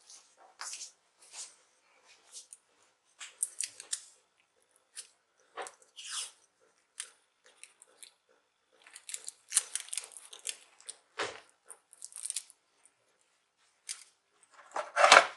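Adhesive tape being handled by hand, in short irregular crackling rustles and clicks, densest in a cluster in the second half.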